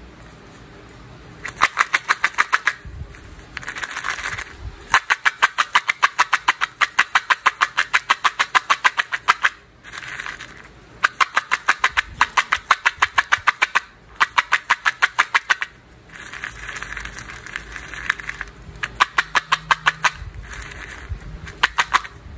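Hard-coated candies rattling in a plastic cup shaken by hand: rapid runs of clicks, about six a second, in several bursts a few seconds long with short pauses between.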